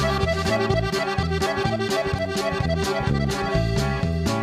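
Norteño accordion playing the melody in an instrumental break between sung verses, over a steady bass and rhythm accompaniment.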